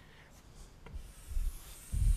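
Chalk scraping across a blackboard as a long straight line is drawn, starting about a second in, with a few dull low thuds alongside.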